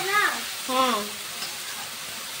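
Browned onions and freshly added spice powders frying in oil in a steel kadhai, sizzling steadily as a metal spoon stirs them.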